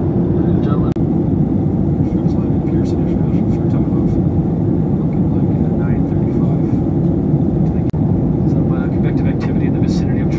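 Steady engine and airflow noise heard inside the cabin of a jet airliner in flight.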